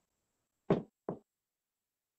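Two short knocks about half a second apart, the first louder, with silence around them.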